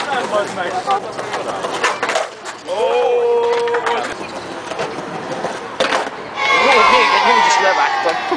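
Skateboards popping, clacking and landing on stone paving, with wheels rolling between the hits. Raised voices call out twice in the background.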